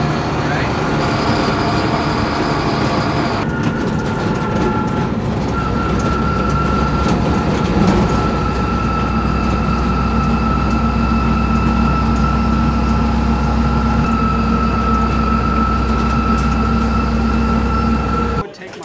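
Military cargo truck driving, heard from the canvas-covered cargo bed: a steady engine and drivetrain rumble with a steady high whine over it.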